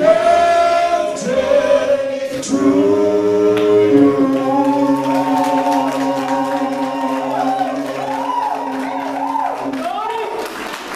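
Church congregation singing together, led by a man on a microphone. From about four seconds in they hold one long chord while a higher voice wavers up and down above it.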